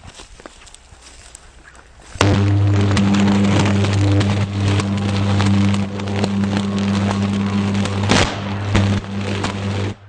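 Electric arc on a high-voltage overhead power line. About two seconds in, a loud, deep, steady electric hum starts suddenly, with crackling and sharp snaps throughout and a loud crack near the end. This is the sound of a fault arc burning between the line's wires.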